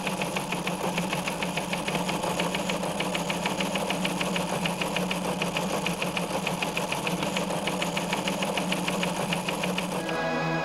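Teletype-style sound effect: a steady, rapid mechanical clatter over a constant low motor hum, accompanying text being typed out on screen.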